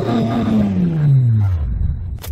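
Engine revving sound effect with the revs dropping back from high: one pitched tone gliding steadily down, fading near the end.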